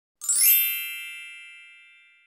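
A bright, shimmering chime sting: a quick glittering run of high notes about a quarter second in settles into a ringing chord that fades away over the next two seconds.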